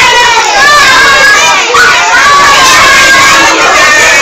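Many young children's voices shouting together, loud and overlapping.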